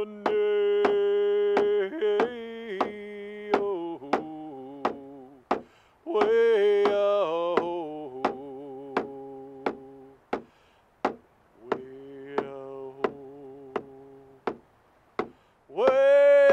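A man singing a chant-like song to a hide hand drum struck steadily about twice a second. The song comes in three phrases of long held notes, each stepping down in pitch, and the drum beat carries on through the short pauses between them.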